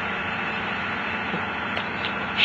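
Steady hiss with a faint low hum, unchanging throughout.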